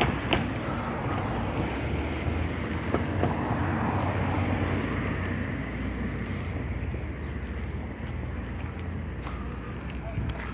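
Steady rumble of distant road traffic, with a couple of faint clicks.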